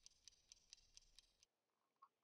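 Faint clock ticking, about four ticks a second, that stops a little over a second in, leaving near silence.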